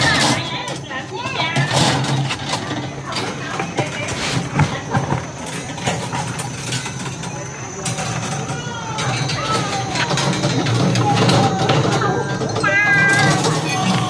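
Indistinct talk among workers, with a few sharp metallic clicks of steel rebar being handled and wired into cages.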